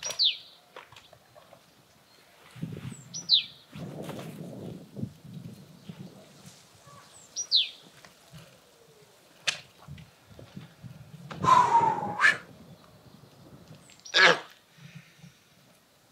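A bird's short, high chirps, each sliding quickly downward, heard three times a few seconds apart, over soft rustling. About three-quarters of the way through there is a louder, brief sound, and another shorter one follows soon after.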